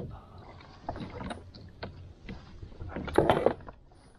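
Small clicks and knocks of a tool working on a kayak's pedal drive unit while a screw on it is tightened, with a louder clatter of hard parts about three seconds in; the drive had been popping loose. Low water and wind rumble underneath.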